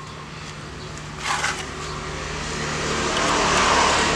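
A motor vehicle's engine running with a steady low tone, growing steadily louder as it draws near. A short clatter comes about a second in.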